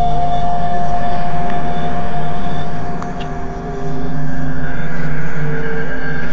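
Dark, ominous synthesized background score: sustained droning chords of several held notes over a low rumble, swelling and easing in two long waves.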